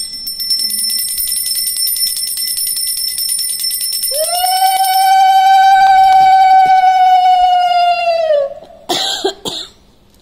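A brass puja hand bell rung rapidly and continuously, its high ringing partials sounding through the first half, while a conch shell (shankha) is blown in one long, loud held note from about four seconds in, dropping in pitch as the breath runs out. Two short noisy bursts follow near the end.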